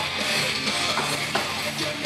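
Music with strummed guitar, playing loud and steady.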